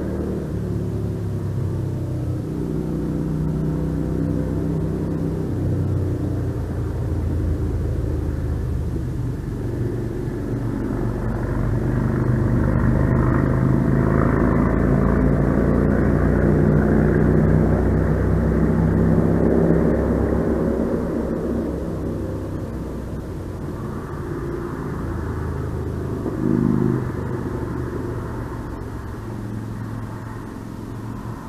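Engine rumble with a steady hum, slowly growing louder to a peak a little past the middle and then fading, with a brief swell near the end.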